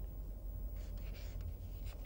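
Pen scratching on paper as a fraction is written on a sheet pinned to a board: a few faint strokes about a second in and again near the end, over a low steady hum.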